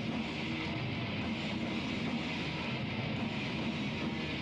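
Heavy metal band playing live, a dense, unbroken wall of distorted electric guitars with drums, heard through a camcorder's microphone.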